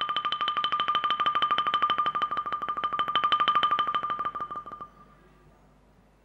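Bamboo t'rưng xylophone played solo: a fast tremolo roll of even strikes on a single high note, which swells and then fades out about five seconds in.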